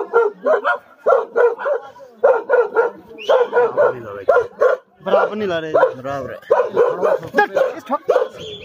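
A dog barking repeatedly in quick runs of short barks, about three a second.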